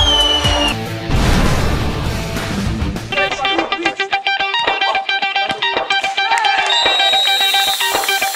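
Background music with guitar and a beat; about a second in a stretch of noise takes over for two seconds, then a fast, evenly pulsing guitar-like pattern runs on.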